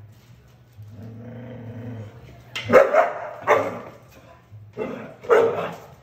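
A bull terrier growls low for about a second and a half, then barks sharply: three barks, a short pause, then two more, while squared off against a cat.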